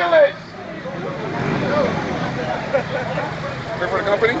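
A man's voice amplified through a handheld megaphone cuts off just after the start, leaving street noise: a crowd's overlapping chatter with traffic swelling through the middle.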